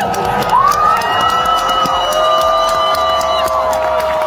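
Concert crowd cheering, with several overlapping long, high screams that rise and then hold.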